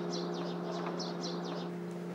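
Small birds chirping in quick, repeated short calls, stopping near the end, over a low held note of background music.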